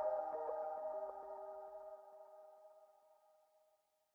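The closing notes of a song: held chords with a few soft notes struck in the first second, fading out to silence just before the end.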